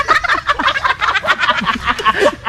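People laughing hard in rapid, high-pitched cackles, one burst after another.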